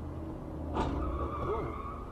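Steady low road and engine rumble of a moving car, heard from inside the cabin. Just under a second in comes a sudden sharp noise, followed by about a second of higher steady tones.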